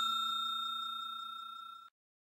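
Notification-bell 'ding' sound effect ringing out: a single struck bell tone that fades away steadily and dies out near the end.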